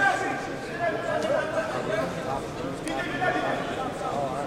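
Indistinct raised voices of people in the hall, talking and calling out over one another, with a sharper shout at the start.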